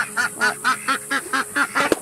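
Ducks quacking in a rapid, even run of short calls, about four a second.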